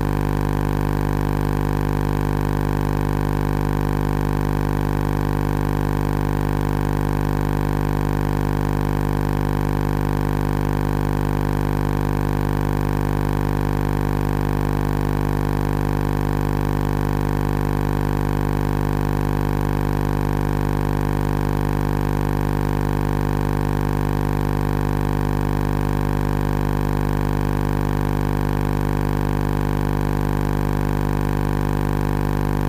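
A steady, unchanging hum made of several low pitches at once, holding the same level throughout, with no rise, fall or break.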